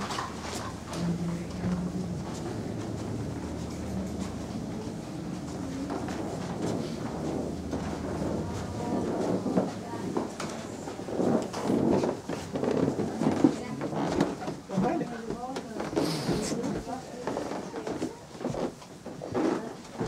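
Indistinct voices of people talking as they walk, with a steady low hum through the first several seconds.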